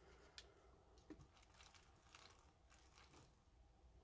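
Near silence: salt water is poured from a plastic bottle into a flameless ration heater bag, heard only faintly, with a few soft ticks and crinkles of the bag.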